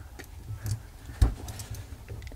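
Screwdriver turning out the screw that holds the steel comb of a wind-up music box movement: a few light metal clicks and ticks, with one louder knock just after a second in. The screw comes loose easily.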